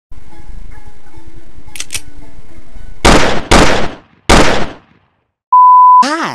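Faint video-game music and background sound played from a TV, then three loud blasts, the first two half a second apart and the third a little under a second later, each dying away quickly. It ends in a loud, steady, high censor-style beep lasting about half a second.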